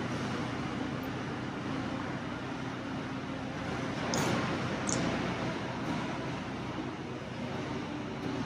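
Roll-off dumpster trailer's hydraulic lift running steadily as the rams tilt the loaded dumpster up to dump, with two brief high-pitched sounds about four and five seconds in.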